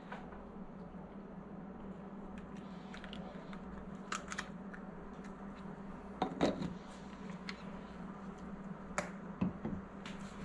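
Quiet handling of a plastic baby bottle: a few soft clicks and taps as the nipple ring is screwed on and the bottle is stood in a bowl of warm water. A steady low hum runs underneath.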